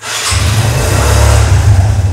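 Motorbike engine starting and running loudly close by: a heavy low rumble under rough noise, coming in suddenly at the start and holding steady.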